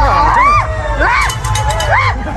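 Roadside spectators shrieking and cheering, with three high rising-and-falling yells, the first from several voices at once, over a steady low street rumble.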